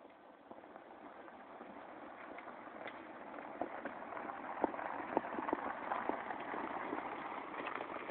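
Tyres of an all-electric side-by-side crunching over a rocky trail, with stones clicking and popping under them. The sound grows steadily louder, and the sharp clicks come thicker from about halfway through. No engine is heard.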